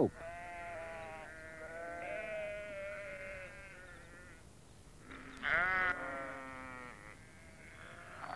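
Sheep bleating: one long, wavering bleat lasting about four seconds, then a louder, shorter bleat a little after five seconds in.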